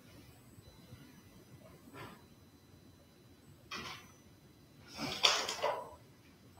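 Quiet room tone broken by a few brief scuffs of someone moving about, the loudest about five seconds in.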